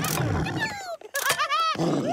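Wordless cartoon character vocalizations: a run of short cries, yelps and whines whose pitch arches up and down, broken by a sharp sudden sound effect about a second in.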